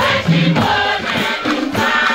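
Large choir of many voices singing together, accompanied by hand drums beaten in a steady rhythm.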